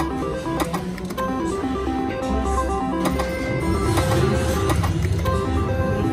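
Casino slot-machine sound: steady musical tones and jingles, with short clicks as a three-reel slot machine's reels stop and a new spin starts.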